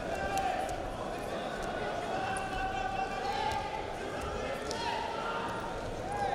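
Greco-Roman wrestlers grappling standing: feet thudding and hands slapping on the mat in scattered knocks, with voices calling out over them.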